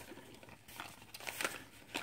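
Faint crinkling and rustling of plastic packaging as a beauty subscription bag is opened, with a few soft crackles.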